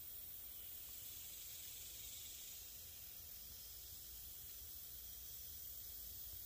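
Faint, steady hiss over a low rumble, with no distinct sound event: background noise of a still night recording.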